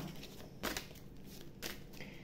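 Two brief rustles of a deck of cards being handled in the hands, about a second apart.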